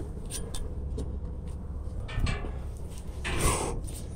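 Climbing a metal wall ladder with a handheld camera: light clicks and scuffs of hands on the steel rungs over a steady low rumble of handling noise, with a longer rush of noise near the end.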